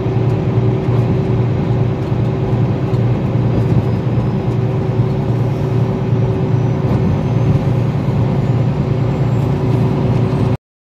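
Steady road and engine noise inside a moving vehicle's cabin at highway speed: an even low drone with a constant hum.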